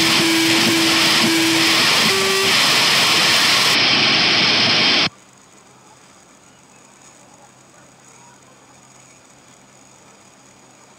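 A loud, steady rushing noise with a faint held tone in it, cutting off suddenly about five seconds in and leaving only a faint low hum.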